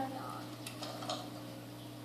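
A few light clicks and taps of a small plastic solar-powered dancing frog toy being handled and set down, over a faint steady low hum.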